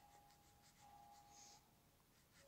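Faint scratching of a pen drawing a short line on squared notebook paper.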